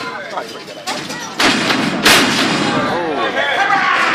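Sharp impacts of wrestlers in a ring: two loud cracks, about a second and a half and two seconds in, the second the loudest. Spectators shout around them.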